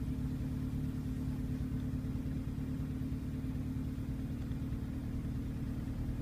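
A car engine idling steadily, heard from inside the cabin, as a low even hum with no revving.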